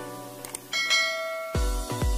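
A bright bell-chime sound effect rings out a little under a second in, over light background music. A heavy electronic beat with deep bass kicks in near the end.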